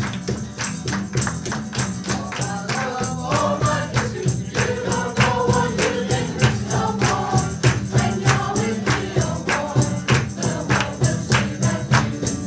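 A choir singing an upbeat song to a steady percussive beat of about three to four strikes a second.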